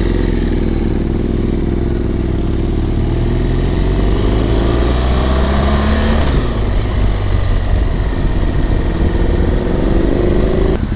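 BMW R 1200 GS Adventure's boxer twin engine pulling away and accelerating in the low gears. Its pitch climbs and then drops at a gear change about six seconds in.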